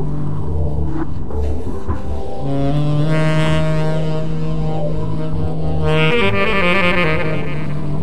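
Tenor saxophone in free-improvised avant-garde jazz, holding long low notes: one for just over a second, then another for about three and a half seconds, with shifting notes above.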